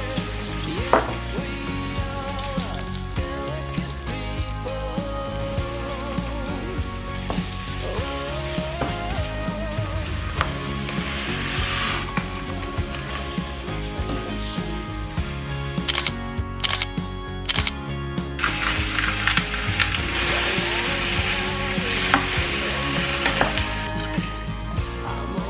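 Sliced onions sizzling in oil in a frying pan, with a rush of dry risotto rice poured into the pan about halfway through, under background music.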